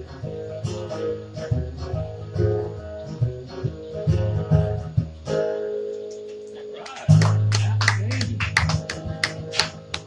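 Acoustic guitars play an instrumental passage, picked notes over a bass line, and end on a held chord about five seconds in. About seven seconds in a steady low hum starts suddenly, along with a run of sharp clicks and voices.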